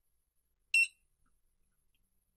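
RFID keycard encoder giving one short, high-pitched beep a little under a second in, signalling that the keycard has been encoded successfully.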